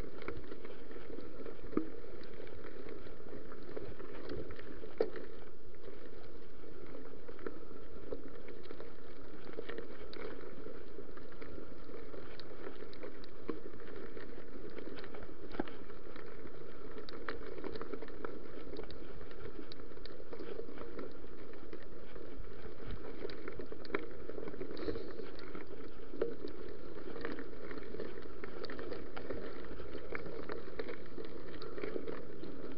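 Mountain bike rolling over a gravel track: a steady rolling rush from the knobby tyres, with scattered small clicks and rattles from stones and the bike.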